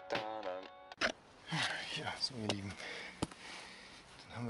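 Background song with singing that cuts off abruptly about a second in, followed by a man's voice and two sharp clicks, one at the cut and one a couple of seconds later.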